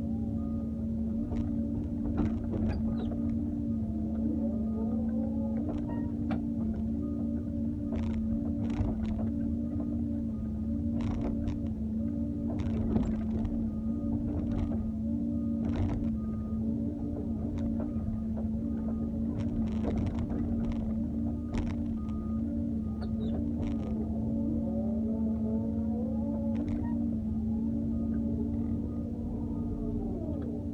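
Doosan 140W wheeled excavator running with a steady engine drone, its hydraulics whining up and down in pitch as the boom and bucket move. Scattered knocks and scrapes from the bucket working soil and stones.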